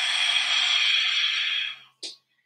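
A woman's long, deep breath close to the microphone: one steady rush of air lasting about two seconds, fading out near the end.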